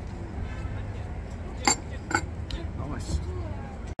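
Two sharp clinks of café crockery about halfway through, the second fainter, over a steady low rumble of street traffic.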